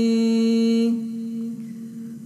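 A single voice chanting in a Buddhist recitation, holding one long steady note that fades away about a second in.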